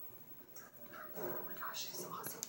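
A person's faint voice: soft, short vocal sounds that begin about a second in, after a near-quiet start.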